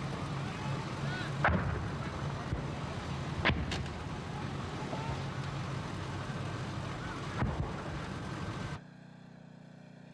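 An engine running steadily, with three sharp cracks or knocks spread through it. It cuts off abruptly near the end, leaving a fainter steady hum.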